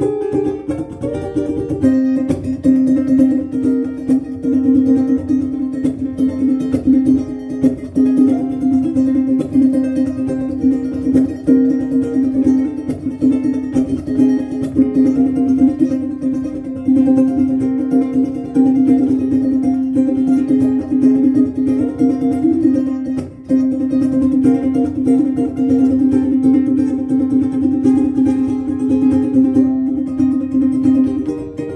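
Ukulele played solo, a continuous run of plucked notes and chords in a melody, with a brief break about two-thirds of the way through.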